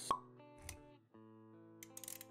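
Animated-intro music with a sharp pop sound effect right at the start, then a low thud a little later and a brief break in the music around one second before it carries on.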